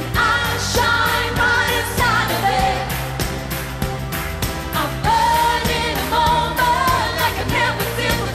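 Live pop song: a female lead vocal sung over a backing track with a steady beat.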